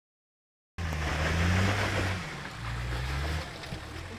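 Nissan Patrol 4x4's engine pulling under load as it crawls over a rock pile, starting abruptly under a second in; its pitch rises a little about halfway through and drops back near the end. A loud rushing hiss lies over it, strongest in the first half.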